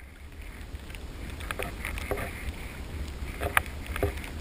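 Canoe being paddled on calm water: scattered splashes and light knocks of the paddle, the loudest near the end, over a low wind rumble on the microphone.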